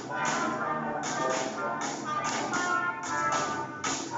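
A student concert band playing, with brass and woodwinds holding pitched notes over sharp percussion hits that come roughly twice a second.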